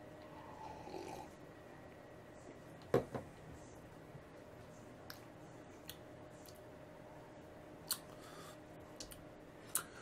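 A quiet sip of beer, then a sharp knock about three seconds in as a glass tulip is set down on the bar top, followed by a few small faint clicks over a steady faint hum.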